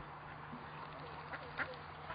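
Long-tailed duck calling: a few short calls past the middle, the second of a close pair the loudest.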